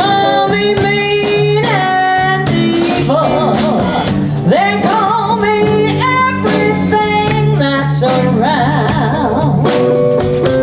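Live blues band playing: a woman sings into a microphone over electric guitars and drums.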